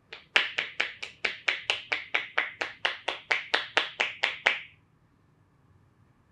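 Praying-hands percussion massage: the therapist's palms, pressed together, strike rapidly on the client's head, each stroke a sharp clap as the hands smack together. About twenty strokes come at roughly four a second, then stop a little more than a second before the end.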